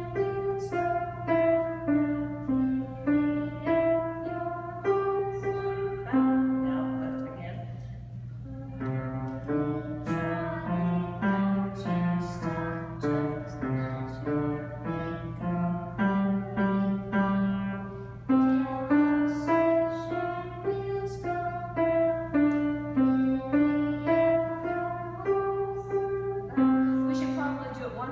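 Upright piano played by a young girl at a lesson: a simple melody of single notes at a steady, unhurried pace. There is a brief dip about eight seconds in, then a middle passage lower down the keyboard before the melody returns higher. A steady low hum runs underneath.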